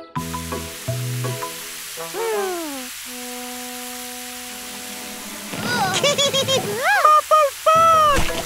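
Cartoon garden-hose spray: a steady hiss of water that starts right at the beginning, under light background music with a falling glide about two seconds in. In the second half a cartoon character makes wordless, pitch-bending vocal sounds.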